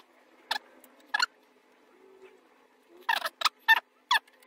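Screw being turned with a hex key through the 3D-printed hot end mount, giving short squeaks and clicks: two single ones about a second apart, then a quick run of four near the end.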